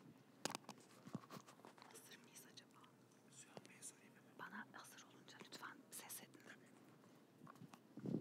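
Faint low voices murmuring close to an open microphone, with scattered small clicks and knocks.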